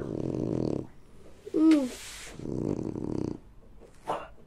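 A dog growling in two low, rough spells, with a short falling whine-like call and a brief rustle between them.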